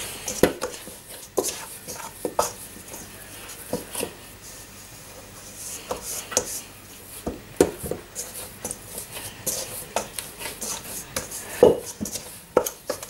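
Hands working butter cookie dough in a stainless steel mixing bowl: irregular soft knocks and scrapes of fingers and dough against the metal, with a louder knock near the end.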